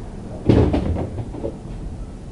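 A door being opened: a sudden clatter about half a second in, followed by a few shorter rattles over the next second.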